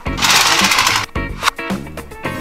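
Plastic toy Batmobile's wheel-driven engine noisemaker giving a fast, rattling mechanical whirr for about a second as the wheels are spun, over background music.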